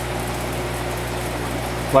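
Aquarium air pump running, a steady low hum with a faint hiss. The pump drives the tank's filtration and protein skimmer.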